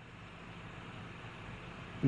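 Faint steady hiss with a low hum underneath; no distinct cutting or machine sound stands out.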